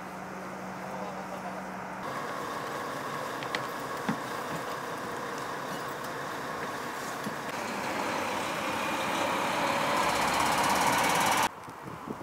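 A team coach's engine running, getting steadily louder in the last few seconds, then cut off abruptly near the end.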